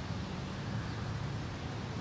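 Steady background noise: a constant low rumble with an even hiss over it, and no distinct events.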